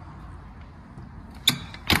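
Two sharp metallic clicks about half a second apart near the end, from the Luton box's rear door locking hardware, over a faint low rumble.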